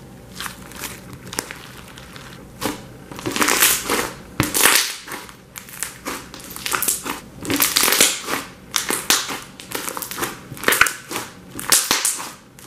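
Hands kneading and squeezing a lump of slime, with wet squishing and clusters of quick clicks and pops from air being pressed out. It grows denser and louder from about three seconds in.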